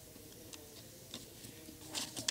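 Quiet auditorium room sound: several faint, sharp clicks scattered through the two seconds over a faint murmur of distant voices.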